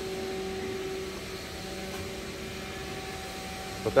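Steady machine hum with a few constant tones, like a fan or other running machinery in the background, unchanging throughout.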